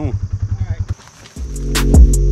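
Utility vehicle's engine idling with a rapid, even low pulse, cutting off about a second in. Music with bass notes and drum hits then fades in.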